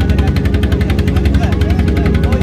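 A boat engine running steadily with a rapid, even chugging beat, loud and close.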